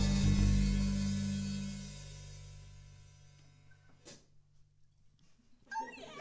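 An acoustic swing band's last chord, with guitars, double bass and a cymbal, ringing out and fading away over about three seconds. About a second later there is a single sharp click, then near silence until voices and laughter begin near the end.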